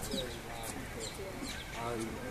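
A small bird calling repeatedly in short, high, down-slurred notes, a few each second, with people's voices faint behind it.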